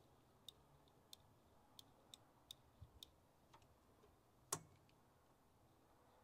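Faint, irregular small metallic clicks and taps, about eight over several seconds with one sharper click about four and a half seconds in, as a screwdriver is worked in the ignition switch of an International Scout 80 under the dash. The starter does not crank.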